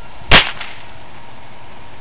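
Remington Vantage 1200 .177 spring-piston air rifle firing one shot: a single sharp crack about a third of a second in, dying away quickly.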